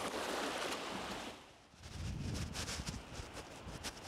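Shallow seawater washing and fizzing over the sand for about a second and a half. After a brief drop, a low rumble with scattered crackles follows.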